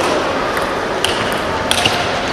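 Table tennis ball clicking off the players' rubber paddles and the table during a rally: a few short, sharp clicks about a second in and near the end, over the steady background noise of the hall.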